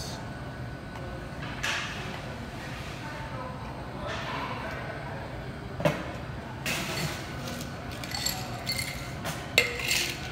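Wooden muddler working ingredients in a metal shaker tin, then scattered clinks and knocks of glass and metal tins. Near the end comes a sharp knock as a mixing glass is seated into the tin.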